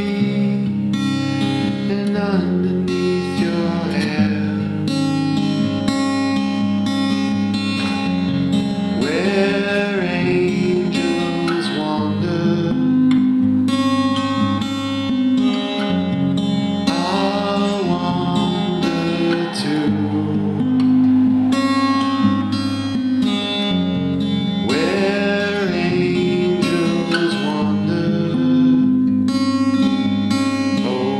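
Instrumental break in a live guitar-led song, with sustained chords and notes that glide up and fall back a few times.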